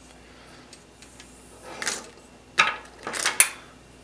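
Handling sounds of an aux cable with metal plugs being picked up and moved about on a table: quiet at first, then a few brief rustles and light clicks in the second half.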